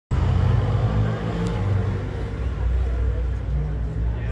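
Outdoor street ambience: a steady low rumble with faint voices from the crowd lining the road.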